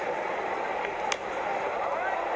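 Steady stadium crowd noise, with a single sharp pop about a second in as the pitched baseball smacks into the catcher's mitt.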